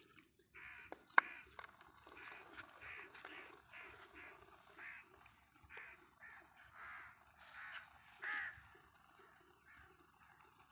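Birds calling over and over, a quick series of short calls at about two a second, faint. One sharp click about a second in.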